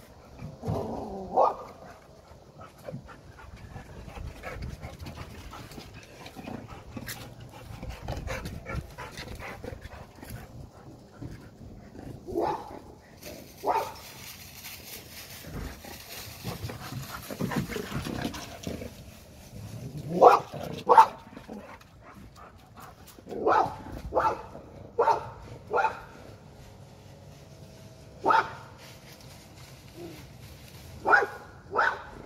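A dog barking at a black bear, in single barks spaced several seconds apart at first, then a quicker run of barks in the last ten seconds.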